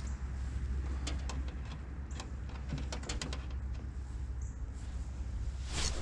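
A low steady rumble with scattered light clicks from handling a spinning rod and reel, then a short rush of handling noise near the end as the rod is swept up to set the hook on a bite.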